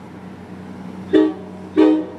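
Commuter train horn giving two short, loud beeps about half a second apart, starting about a second in, over a steady low rumble.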